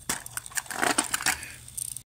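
Blue rubber tire being pulled and stretched off the plastic drive wheel of a Hayward suction-side pool cleaner: irregular rubbing and crackling clicks of rubber against plastic, busiest about a second in.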